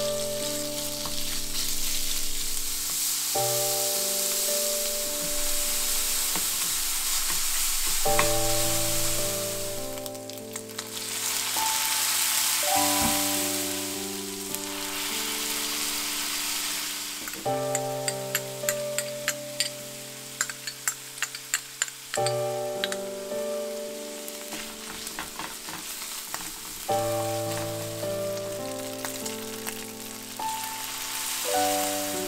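Ground pork and garlic sizzling in oil in a nonstick frying pan as they are stirred, a steady hiss with a run of sharp clicks about two-thirds of the way through and again near the end. Background music with slow sustained chords plays over the frying.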